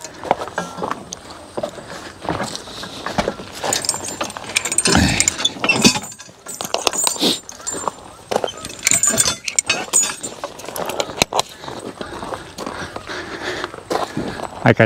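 Metal harness hardware, trace chains and hooks, jangling and clinking in a run of irregular clicks as a draft horse team's traces are unhooked from the singletrees of a wooden sled.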